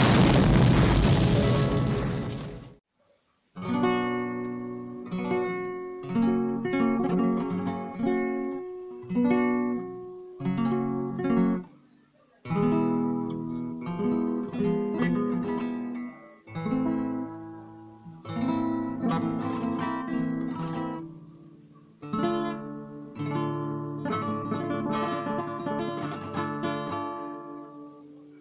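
A loud, noisy explosion-like sound effect lasts about two and a half seconds and cuts off. After a brief gap comes a nylon-string classical guitar played in flamenco style: phrases of plucked notes and strums that ring out, each separated by a short pause.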